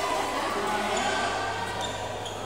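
Echoing sound of badminton play in a large indoor hall: players moving on the court, with a light sharp tick near the end.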